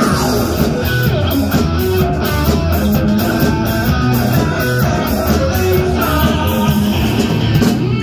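Live rock band playing: an electric guitar plays a lead line over bass guitar and drums.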